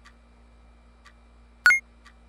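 Faint clock ticking about once a second. About one and a half seconds in comes a single sharp, bright tap with a brief ringing tone, much louder than the ticking.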